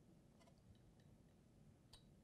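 Near silence with two faint plastic clicks, one about half a second in and one near the end, as a small PCR-tube adapter is handled and set into a 12-place microcentrifuge rotor.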